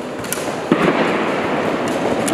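Traditional Turkish bows being shot by a line of archers: sharp cracks of released bowstrings and arrows, the loudest about three-quarters of a second in, over the steady noise of a crowded hall.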